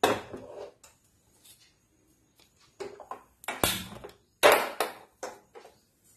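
Clatter and knocks at a gas stove as a burner is lit: a series of short, sharp handling sounds, loudest about three and a half and four and a half seconds in.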